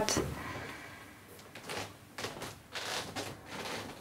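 Quiet room with a few faint, brief rustling noises and no clear single source.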